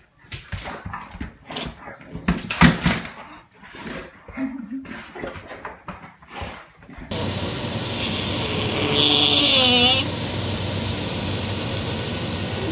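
English bulldog rolling and wriggling on its back on a rug, making irregular scuffs, rubbing and thumps. About seven seconds in, the sound changes to a steady hiss with a brief wavering whine a couple of seconds later.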